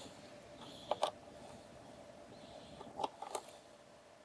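A few faint, sharp clicks and taps of handling on a laptop's textured plastic underside over quiet room tone: two close together about a second in, and a small cluster around three seconds in.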